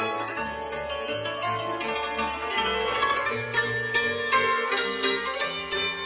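Background music from a Moravian cimbalom band: the cimbalom's quick runs of struck notes over a bass line.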